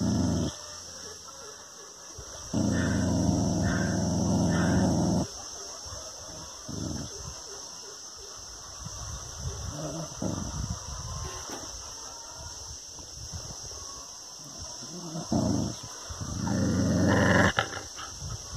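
A dog growling at its own reflection in a mirror: a long growl lasting a couple of seconds, a few short growls, and another long growl near the end.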